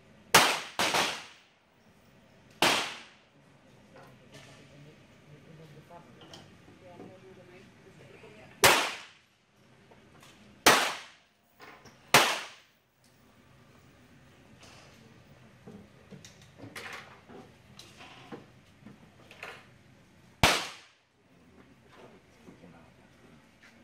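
.22LR semi-automatic target pistols fired one shot at a time from several lanes, slow precision-stage fire. There are about seven loud, sharp cracks at irregular intervals, each ringing off briefly under the roofed firing line, with a few fainter shots from other lanes in between.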